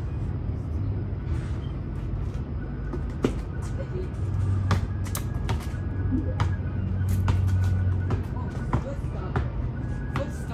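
A basketball bouncing on a paved driveway, sharp irregular thuds coming mostly in the second half, over a low steady rumble.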